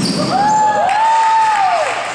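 A few spectators' voices in a drawn-out cheer that rises and falls in pitch for over a second, reacting to a layup attempt.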